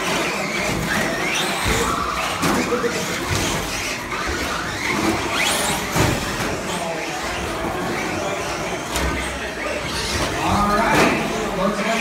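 Losi RC short course trucks running laps on a carpet track: a high-pitched motor whine that rises and falls with the throttle.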